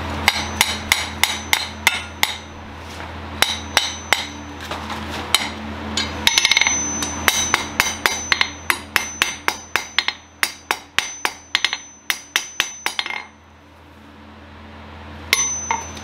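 Blacksmith's hammer striking a red-hot steel bar on an anvil in quick runs of blows, three or four a second, each with a bright metallic ring. The blows pause about thirteen seconds in, and two more come near the end.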